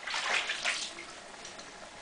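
Bathwater sloshing and splashing in a foam-filled tub as hands move through the water, strongest in the first half-second or so, then dying down.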